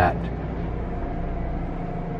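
Steady low mechanical hum with a faint higher whine running through it, from a machine running inside the motorhome.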